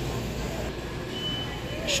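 Supermarket background noise: a low steady hum with indistinct murmur. In the second half a faint high steady tone sounds for under a second.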